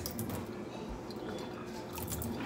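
A thin stream of rice water pouring from a plastic applicator bottle into a stainless-steel sink, steady and faint, with a few light clicks at the start.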